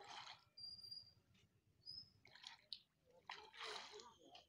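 Hooked fish splashing and thrashing at the surface of a pond, in three short bursts: one at the start, one about halfway through, and a longer one near the end.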